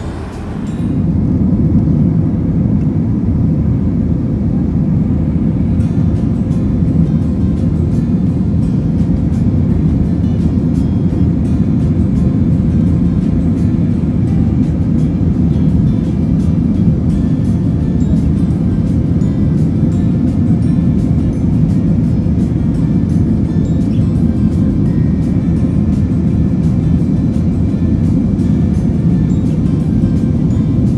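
Steady, low-pitched cabin noise of an airliner in flight, the hum of jet engines and rushing air, which comes in suddenly about a second in and holds unchanged.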